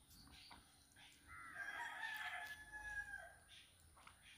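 A rooster crowing once in a single long call of about two seconds, starting about a second in; faint.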